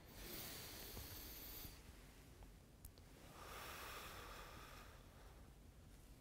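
A man taking a slow, deep breath after exercise: a faint breath in lasting about a second and a half, then a longer breath out starting about three seconds in.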